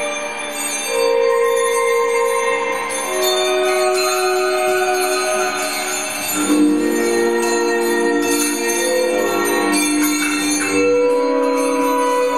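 Free-improvised avant-jazz played on electric guitar, upright bass and drums: long, ringing, bell-like held tones that shift pitch every second or two, thickening into a denser cluster about halfway through.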